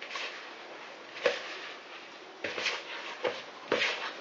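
Hands kneading butter, flour, sugar and cocoa into crumble dough in a plastic mixing bowl: a soft, steady rustling and squishing, with a few louder scrapes and knocks against the bowl.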